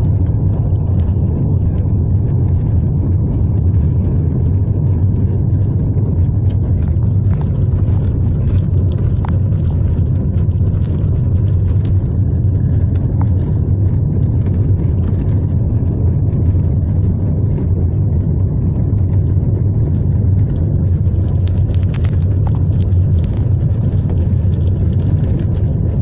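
Steady low rumble of a car in motion heard from inside the cabin: engine and tyre noise holding an even level throughout.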